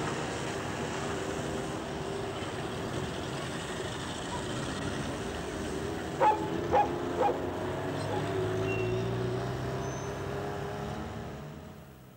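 Outdoor city ambience: a steady low hum of traffic, with a dog barking three times about six to seven seconds in, all fading out near the end.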